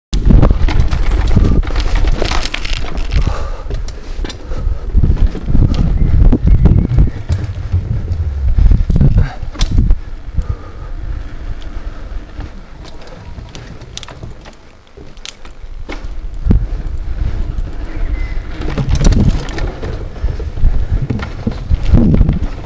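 Mountain bike ridden over a rough rocky trail and wooden north shore boardwalk on an on-board camera: wind buffeting the microphone in surges, with frequent rattles and knocks from the bike and tyres over the rough surface. It eases off for a moment past the middle, then picks up again.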